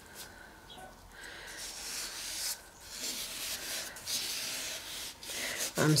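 A nitrile-gloved hand rubs and presses on the back of a stretched canvas in several soft strokes, pushing the canvas down into wet acrylic paint to spread it.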